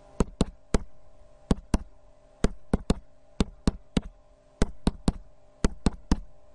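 Sharp computer mouse clicks, one for each key pressed on an on-screen TI-84 calculator emulator as a sum is keyed in. There are about sixteen clicks, mostly in quick pairs with short pauses between them.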